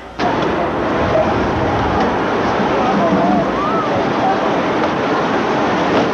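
Crowd in the stands cheering, starting suddenly and holding as a loud, steady din with a few single shouts wavering above it.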